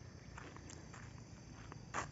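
Faint outdoor background noise with a few soft rustles, about half a second in.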